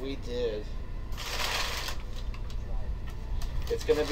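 Rustling of packing paper inside a cloth bag as a hand digs through it, one dense burst a little over a second in that lasts under a second.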